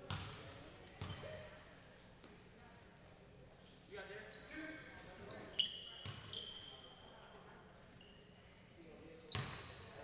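A basketball thudding on the hardwood gym floor a few times: once at the start, again about a second in, and again near the end. Short high squeaks come through the middle, along with faint voices echoing in the large hall.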